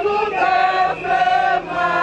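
A crowd of protesters singing a chant together, several voices holding notes in short phrases with brief breaks between them.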